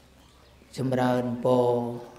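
A Buddhist monk's voice through a microphone, intoning a blessing on one level, chant-like pitch. It starts about three quarters of a second in, after a short pause, with two long held syllables.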